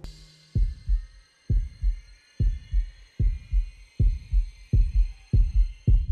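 Cartoon heartbeat sound effect: pairs of low lub-dub thumps, seven beats that come slightly faster toward the end, building suspense. A thin high held tone fades out over the first couple of seconds.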